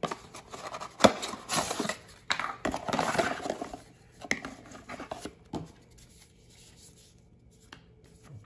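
Cardboard box and paper packaging rustling and scraping as hands pull a power adapter and cord out of the box, with a sharp knock about a second in. The handling goes quieter after about five and a half seconds.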